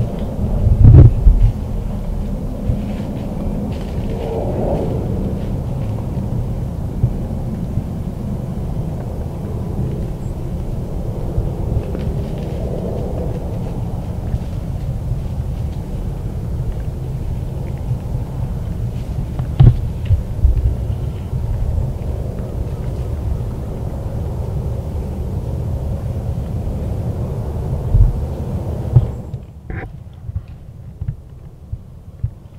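Steady low rumble with a few dull knocks: one about a second in, another around twenty seconds in, and one more shortly before the end.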